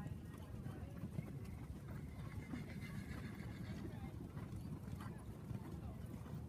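Horse's hoofbeats, soft and muffled on sand arena footing, with faint voices in the background.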